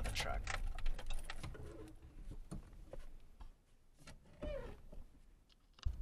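Low rumble inside a moving truck's cabin that fades over the first two seconds, with a few faint voice-like sounds, then a quieter stretch with scattered clicks and light handling knocks.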